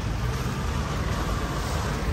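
Pickup truck driving slowly over a wet gravel quarry yard, heard from inside the cab: a steady low rumble of engine and tyres.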